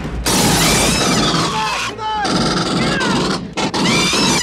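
Film battle-scene soundtrack: rapid gunfire and blasts with shouting voices and high, gliding shrieks over them, loud throughout.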